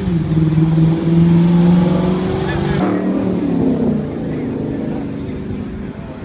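First-generation Chevrolet Camaro's engine accelerating past, its note holding and climbing for the first few seconds. About three seconds in, the pitch drops and the sound fades as the car goes by.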